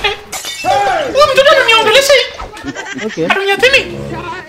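Speech only: a man talking in a lively, pitch-swinging voice.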